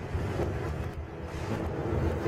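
A low, steady rumble from a documentary soundtrack, played over loudspeakers and recorded in the room.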